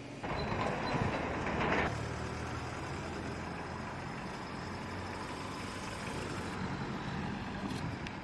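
Vehicle engines running, a steady low hum under outdoor traffic noise that is a little louder in the first two seconds.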